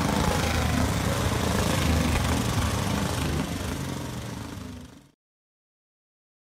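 JAP speedway motorcycle engine running, fading over a second or two and cutting off to silence about five seconds in.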